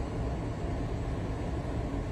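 Steady low rumble of a vehicle running, heard from inside the cabin.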